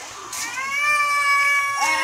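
Domestic cat meowing: one long, drawn-out meow lasting over a second, with another beginning near the end.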